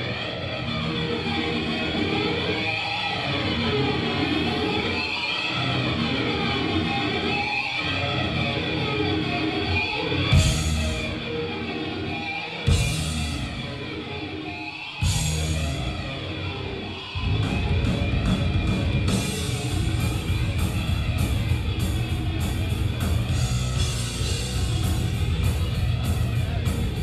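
Live hard rock band playing, led by distorted electric guitar over drums. Three sharp accented hits come about ten, thirteen and fifteen seconds in, then the full band drives on louder and denser, with steady cymbal strokes.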